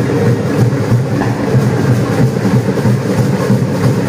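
Music playing steadily and loudly.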